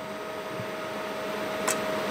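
Steady background machinery hum with a thin steady whine running through it, and one sharp click near the end.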